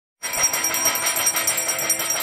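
Brass ritual bells and a hand-held brass plate ringing rapidly and continuously. Many ringing tones overlap, with quick repeated strokes, starting just after the opening instant.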